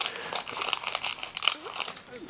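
Foil trading card booster pack crinkling and crackling in rapid, irregular bursts as it is held and cut open with scissors.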